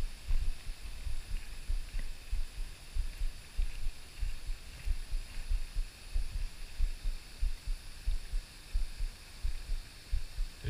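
Irregular low thumps and rumble on a body-worn GoPro's microphone, one to three a second, over a faint steady high hiss.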